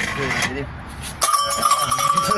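A metal bell on a Maraş ice cream cart is struck about a second in and rings on steadily, part of the vendor's show. Laughter goes on under it.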